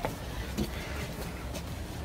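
Low, steady outdoor background rumble with a faint hiss above it, and a small click right at the start.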